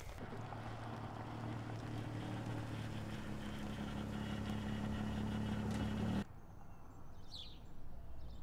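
A vehicle engine running with a steady low hum that slowly grows louder, then cuts off abruptly about six seconds in. A few short bird chirps follow near the end.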